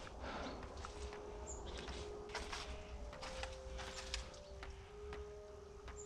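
Footsteps crunching through dry fallen leaves on stone steps and a landing, a short irregular series of faint steps. Faint held background-music notes lie under them.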